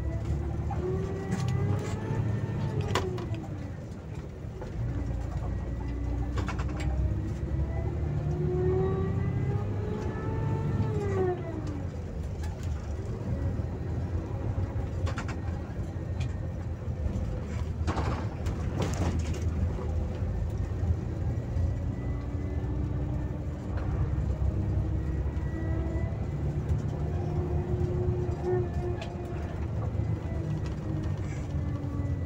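Bus engine heard from the driver's cab: a steady low rumble with a whine that climbs in pitch and drops away sharply twice in the first dozen seconds, as the bus accelerates and changes gear, then holds a steady pitch while cruising. A few sharp clicks or rattles come through around the middle.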